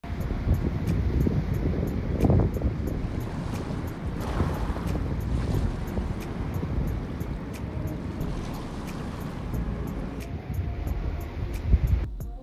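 Small waves washing onto a Lake Michigan sand beach, under steady wind rumbling on the microphone.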